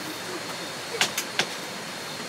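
Three short, sharp clicks in quick succession about a second in, as the hanging lamp is switched off, over a steady background hiss with a faint high tone.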